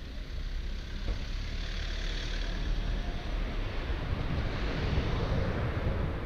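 Rumbling street traffic and road noise heard from a moving bicycle, swelling to its loudest about five seconds in, then easing.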